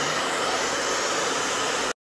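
Handheld hair dryer blowing steadily, then cutting off abruptly near the end.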